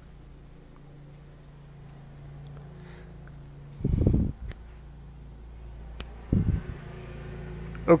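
A man's voice making two short wordless low sounds, about four and six and a half seconds in, over a steady low hum, with a few faint clicks of parts being handled.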